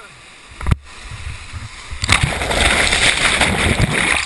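Kayak running a whitewater drop: a single sharp knock close to the microphone about three-quarters of a second in, then the loud rush of whitewater breaking over the boat and camera, building from about two seconds in.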